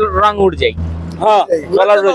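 Men talking over the low, steady engine rumble of a road vehicle, which stops about three-quarters of the way through.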